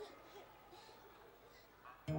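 Near silence, with a faint wavering tone dying away in the first half second.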